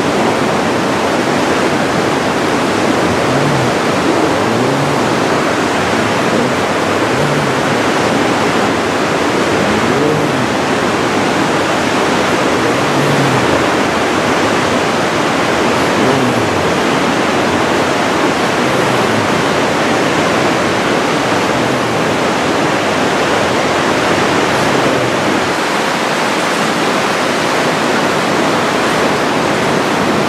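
The Aare river rushing through a narrow rock gorge: a loud, steady noise of fast-flowing water.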